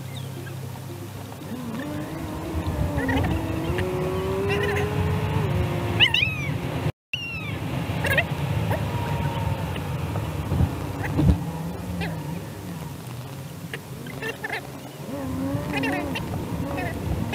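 Steady road and engine noise inside a moving car, with repeated short gliding calls and squeaks over it. The sound drops out completely for a moment about seven seconds in.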